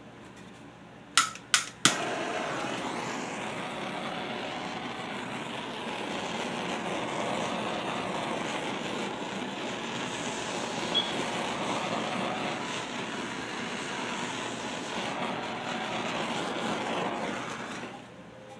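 Handheld gas torch: three quick igniter clicks about a second in, then the flame's steady hiss as it is played over wet acrylic pour paint, cutting off near the end.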